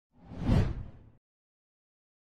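A whoosh sound effect on an animated title graphic: one swell with a deep low end that builds to a peak about half a second in, then fades and cuts off abruptly just after a second.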